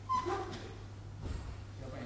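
A short, high whimper-like vocal sound just after the start, a brief high note sliding into a falling wail, over a steady low hum.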